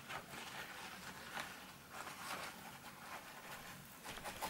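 Faint rustling of a paper tissue dabbed and wiped over damp watercolour paper, a handful of brief soft scratchy strokes, blotting off excess water where harder lines are wanted.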